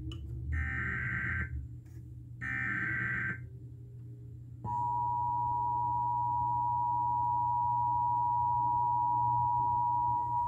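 Emergency Alert System header played through a stereo's loudspeaker: two data bursts of about a second each, a second apart, then a steady two-tone attention signal about halfway through that holds on. It marks the start of a broadcast alert, here a severe thunderstorm warning.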